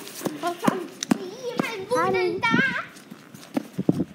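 A young girl's voice making short, high, wavering vocal sounds, with a few sharp clicks in between.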